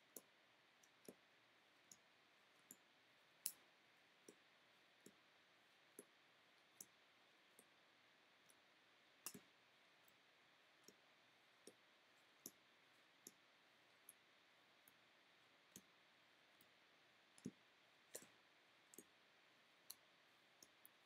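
Faint, sharp clicks roughly once every three-quarters of a second as stiff chrome baseball cards are flipped one by one through a stack held in the hands.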